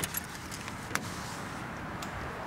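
A street door being unlocked and opened: a sharp metallic click right at the start and another about a second in, from the lock and latch, with small ticks of keys between.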